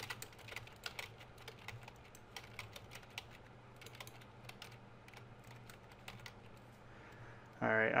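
Computer keyboard being typed on: faint, irregular key clicks in quick runs with short pauses.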